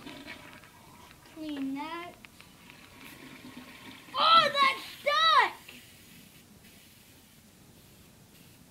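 A child's voice making wordless sounds: a short low vocal sound about one and a half seconds in, then two loud, high cries about four and five seconds in, each rising and falling in pitch.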